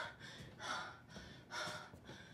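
A woman breathing hard in ragged gasps: two heavy breaths about a second apart, after a short catch of breath at the start.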